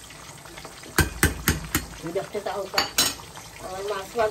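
Metal spoon knocking against the rim of an aluminium cooking pot: four quick sharp knocks about a second in, then two more near the end, as the spoon is shaken clean after stirring. Underneath, the low steady hiss of a thick curry simmering.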